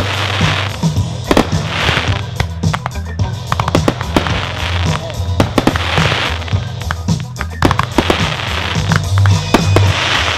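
Fireworks going off in quick succession, many sharp pops and bangs, mixed with a loud music soundtrack with a steady low beat and surges of hiss about every two seconds.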